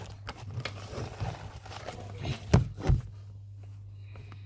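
Knocks and rustling from a phone or camera being handled and set against a table, with two louder thumps close together a little before the end, over a steady low hum.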